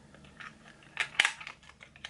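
Small plastic makeup packaging being handled: two sharp clicks a little after a second in, with a few lighter ticks around them.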